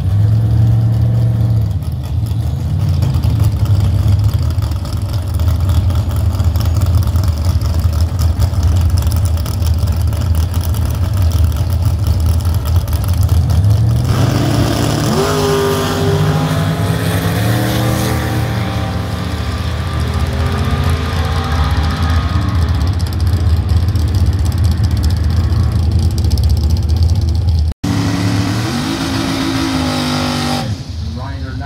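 Turbocharged Ford Fairmont station wagon's engine idling steadily at the drag strip. From about halfway, engine revs rise and fall repeatedly. There is a brief dropout near the end.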